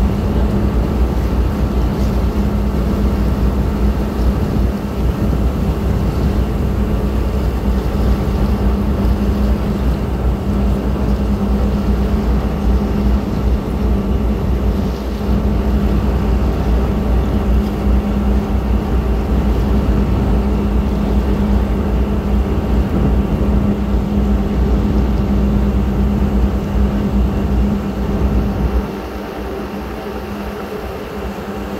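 A tugboat's diesel engine running steadily underway: a loud, constant low drone with a strong steady hum. It drops in level about a second before the end.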